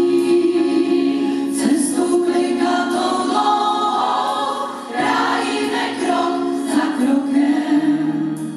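Choir of mostly women's voices singing long held chords, easing off briefly about five seconds in before coming back in.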